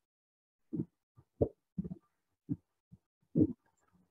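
A person's quiet, short voice sounds: about six brief low puffs spread across four seconds, with dead silence between them as on a noise-gated video-call line.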